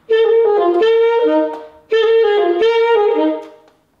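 Alto saxophone playing two short phrases, G-F-G-F-D then G-F-G-F-C, with a short break between them. The Fs are ghost notes: the key is only touched, not closed, and the air is held back so they barely sound.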